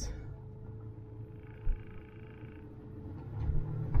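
Low rumble of a car rolling slowly, heard from inside the cabin, with a faint steady hum and a brief thump a little under two seconds in; the rumble swells near the end.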